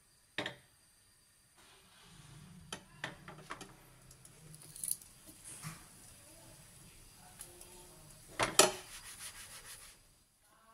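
A silicone spatula rubbing and tapping in a nonstick frying pan as it loosens a thin egg crepe, with scattered clicks. Near the end the pan knocks loudly twice, followed by a quick run of light ticks as it is handled.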